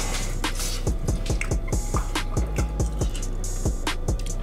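Hip hop background music with a steady deep bass, repeated bass drum hits that drop in pitch, and quick hi-hat ticks.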